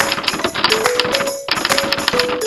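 Rapid typewriter-style clicking, a typing sound effect, laid over light background music with held notes; the clicking pauses briefly about one and a half seconds in.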